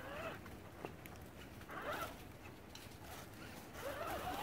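Faint whine from an RC scale crawler's small electric motor and gears, in short throttle bursts as it crawls over rocks, the pitch rising and falling with each burst.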